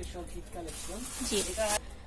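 Cotton garments rustling as they are lifted and unfolded, a hissy rustle lasting about a second, over quiet voices.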